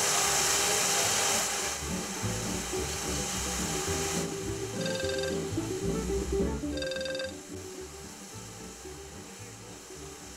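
A smartphone ringing with an incoming call: two short ringtone chimes about two seconds apart. Before them, a loud steady hiss cuts off about four seconds in.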